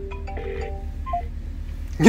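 A simple electronic tune of short single notes plays through the car's speakers from the Volkswagen Phaeton's touchscreen phone system as a call is placed. A low steady hum runs underneath.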